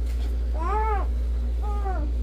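A baby making two short, whiny fussing cries, each rising then falling in pitch, the second shorter than the first.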